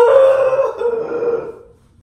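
A man's long, high-pitched wordless wail of pain from a burn blister on his hand, held on one pitch for about a second and a half before fading out.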